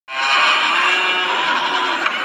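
A shrill, dense horror-style sound effect that starts abruptly and holds steady at a high level.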